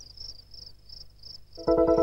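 Crickets chirping softly in an even rhythm, about four chirps a second. Near the end, electronic music breaks in suddenly and loudly with a sustained chord and a fast pulse.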